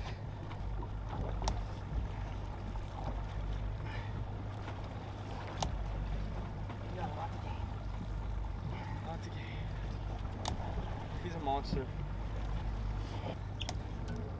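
Boat outboard engine running slow with a steady low hum, under wind and water noise. A couple of sharp clicks come through, one about halfway and one later on.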